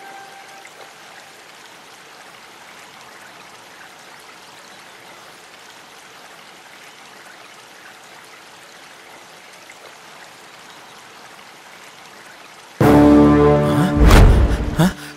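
Faint steady ambient hiss. About a second before the end, a sudden loud, low, horn-like music sting with a rich stack of overtones cuts in.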